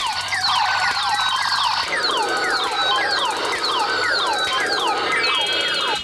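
Battery-powered plastic toy space gun sounding its electronic laser effect: a rapid series of falling zaps, two or three a second, with a run of short stepped beeps near the end before it cuts off suddenly.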